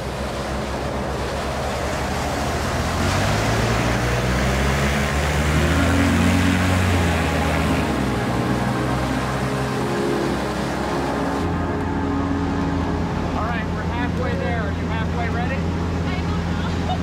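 Propeller plane's engine running, a loud, noisy drone on the airfield. About eleven seconds in it gives way to the steadier, lower drone of the engine heard from inside the aircraft cabin, with a woman's excited voice over it near the end.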